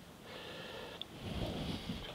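A person breathing audibly through the nose, growing louder in the second half.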